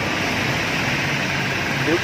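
Toshiba TOSCON tank-mounted air compressor running steadily under a test run, a continuous even machine noise.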